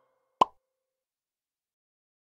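A single short cartoon pop sound effect, about half a second in.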